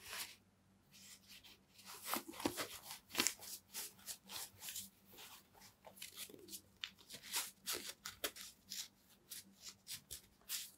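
An Adidas Predator goalkeeper glove being handled and pulled onto a hand, its knit cuff tugged over the wrist: a run of short, irregular rustling and scraping strokes.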